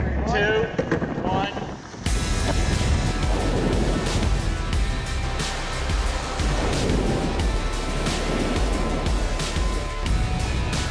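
Wind on the microphone and rushing water from a TP52 racing yacht under sail, over a music score; crew voices call out in the first two seconds, then the wind and water noise comes in suddenly and loud.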